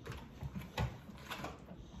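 A few light taps and clicks of felt-tip markers being picked up, handled and drawn with on paper at a wooden table, the clearest tap a little before the one-second mark.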